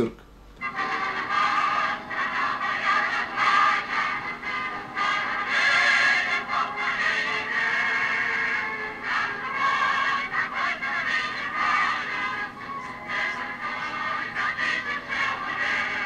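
Music from an old 1930s film soundtrack, starting about half a second in and continuing without a break.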